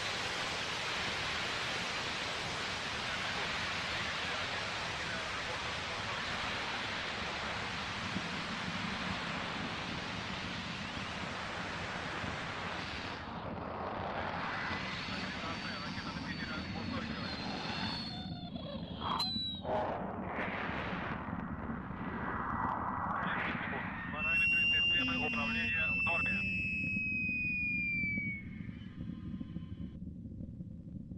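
Rocket engines of a climbing launch vehicle heard from the ground as a steady noisy roar. About 13 seconds in, the roar thins and dulls, and a few faint high whistling tones and crackles come through near the end.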